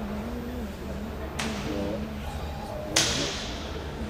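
Two sharp slaps of a sumo wrestler's hand on bare skin, about a second and a half apart, the second louder and followed by a short echo.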